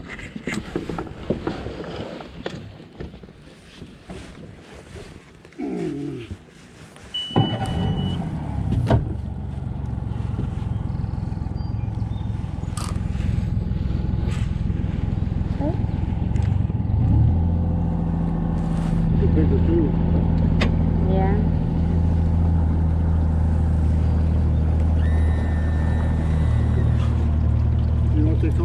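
Boat's outboard motor starting about seven seconds in and running, its note rising and growing louder around seventeen seconds as the boat gets under way, then holding steady.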